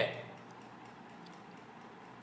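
A man's lecturing voice trails off at the start, followed by a pause of faint room hiss with a few very faint ticks.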